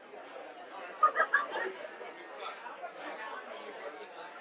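Room full of people chatting in many overlapping conversations at once. One nearby voice is briefly louder about a second in.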